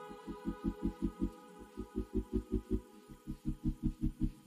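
Background music: a fast, even low pulse of about six beats a second under sustained chords that change about a second and a half in.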